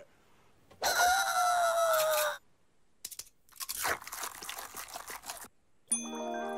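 Cartoon sound effect of crisp food being bitten and chewed: a run of irregular crunches through the second half. Before it there is a held tone, falling slightly, that lasts about a second and a half.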